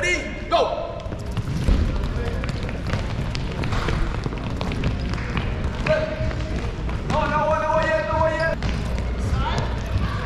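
Several soccer balls being kicked and bouncing on a hardwood gym floor, a scattered run of knocks all through, with young children's high voices calling out now and then, one long call about three-quarters of the way in.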